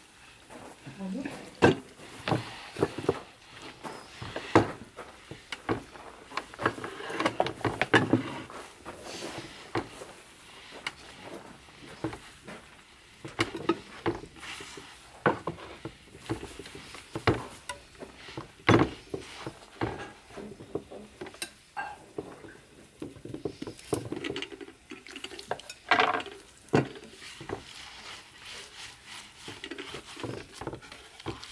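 Hands mixing and kneading bread dough in a large glazed earthenware dish: irregular knocks, slaps and clicks against the clay as flour and water are worked together.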